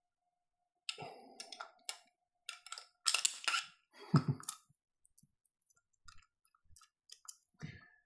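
Scattered clicks and scrapes of small metal parts being handled: M-LOK T-nuts and screws being worked onto a rifle handguard, with a denser scuff and a thump about three to four seconds in.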